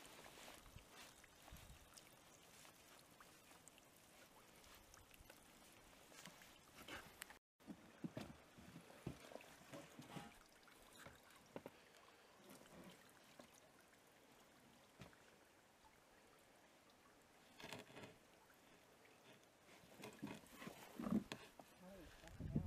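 Near silence with faint trickling and dripping water and scattered light knocks from a whitebait net and its stand being handled. A few slightly louder knocks and splashes come near the end.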